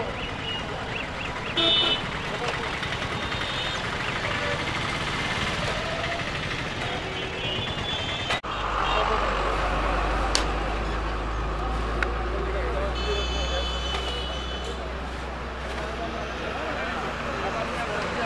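Busy street noise of a crowd talking over traffic, with a short loud vehicle horn toot about two seconds in and another horn sounding for about a second and a half later on. A steady low hum runs under the second half.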